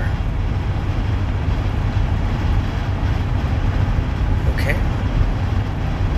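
Steady low rumble of outdoor background noise with a fainter hiss above it, even in level throughout, with one brief faint higher sound near the end.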